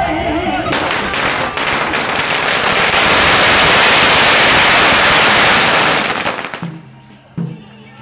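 A long string of firecrackers going off in a rapid, dense crackle of bangs, starting about a second in and cutting off after about six seconds.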